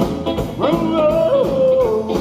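Live rockabilly band playing: hollow-body electric guitar, upright double bass and drum kit over a steady beat, with a bending, gliding melody line on top from about half a second in.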